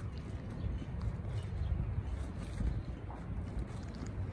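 Wind buffeting the microphone, a low, uneven rumble that rises and falls.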